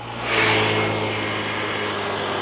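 A motor vehicle running close by: a steady engine hum with a rushing noise over it that swells about half a second in, then eases slightly and holds.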